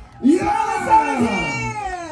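Drawn-out, wailing vocal calls with long sliding pitches that mostly fall, starting about a quarter second in.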